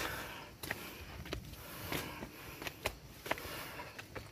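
Footsteps of someone walking up a stony dirt path, a short step sound roughly every two-thirds of a second, over faint rustling close to the microphone.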